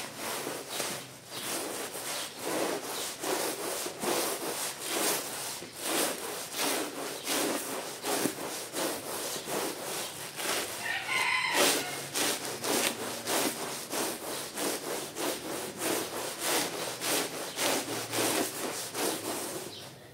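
Stiff plastic-bristled push broom scrubbing a soapy, wet rug on concrete in quick, steady back-and-forth strokes, each a wet rasping brush sound. About halfway through the strokes break briefly and a short higher-pitched call or squeak is heard.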